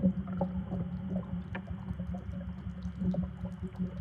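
A low, steady droning rumble with a constant hum, and faint scattered ticks above it.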